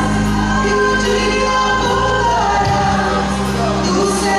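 Church worship group singing a gospel song in Portuguese, a woman leading with backing voices over live band accompaniment, the voices holding long notes.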